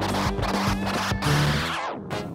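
Beat-driven music played from turntables with record scratching over it. Near the end the treble sweeps downward and the music starts to drop away.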